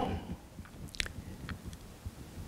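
A few faint, short mouth clicks and lip noises from a man pausing between sentences, close to his lapel microphone, over low room tone.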